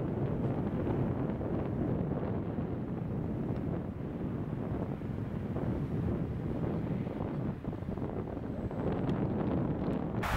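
Wind buffeting the microphone: a steady, low rumbling rush that rises and falls with the gusts.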